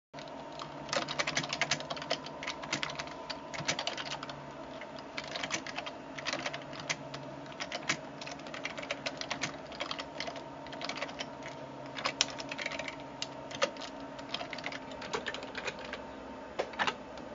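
Computer keyboard typing in quick, irregular bursts of keystrokes, over a steady hum.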